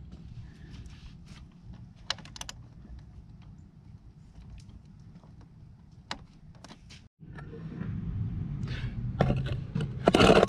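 Small clicks and taps of wiring being handled: copper ring terminals and insulated leads knocking against the stainless spa heater tube and its terminal posts. After a short break about seven seconds in, a louder low rumble of background noise comes in.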